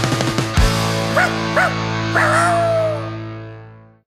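The final held chord of a rock song ringing out and fading away, with two short dog-like yelps and then a longer falling howl over it.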